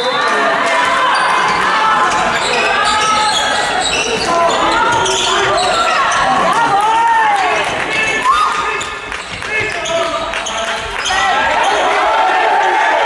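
A handball bouncing and being passed on a sports hall floor during play, with players shouting and calling, echoing in the hall.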